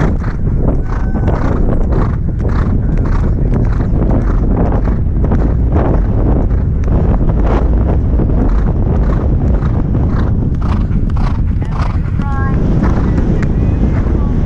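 Thoroughbred horse galloping on turf: rhythmic hoofbeats at about two strides a second, over heavy wind rumble on a helmet-mounted microphone. A brief pitched call comes near the end.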